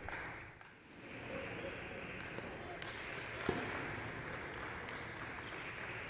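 Table tennis ball struck by the bats and bouncing on the table in a rally: a few short sharp clicks, the clearest about three and a half seconds in, over the steady hum of a large hall.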